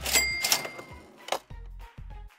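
Cash-register-style 'cha-ching' sound effect: sharp clicks followed by a ringing bell tone that fades within about a second, then another click, over background music.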